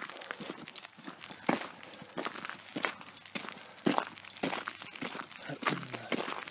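Footsteps on an asphalt road, one short scuffing step about every two-thirds of a second at a steady walking pace.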